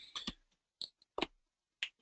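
About four short, sharp clicks spread across two seconds, with silence between them.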